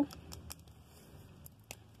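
Faint handling noise from a thin plastic toy flute being turned in the hands: a few light clicks, the sharpest near the end. No note is played.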